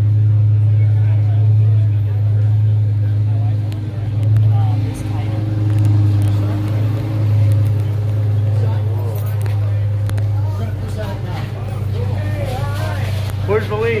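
Steady low rumble of an idling motor vehicle, with several people's voices talking in the background during the second half.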